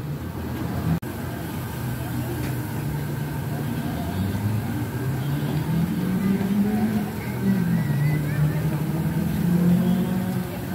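A steady motor hum whose pitch slowly wavers up and down, with a single click about a second in.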